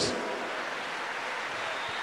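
Congregation applauding in a large hall, picked up faintly as a steady, even wash of clapping.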